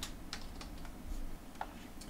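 Computer keyboard typing: a handful of separate keystrokes, spaced unevenly.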